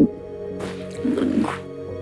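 Soft background music with steady sustained notes, over which someone sniffles and sobs wetly for about a second in the middle.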